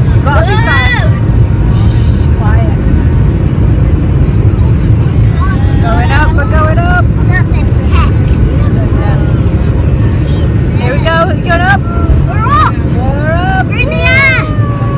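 Loud, steady low rumble of a jet airliner's engines heard from inside the passenger cabin, with young children's high-pitched excited voices breaking in several times.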